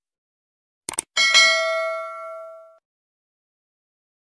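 Two quick clicks, then a bright bell-like ding that rings for about a second and a half and fades away: the click-and-bell sound effect of a subscribe-button animation.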